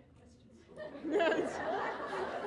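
Several voices talking over one another in a large room, rising suddenly about a second in after a brief lull.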